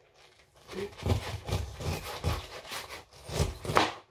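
A kitchen knife sawing through the tough rind of a whole pineapple near its crown: a quick run of short sawing strokes, about four a second, starting about a second in.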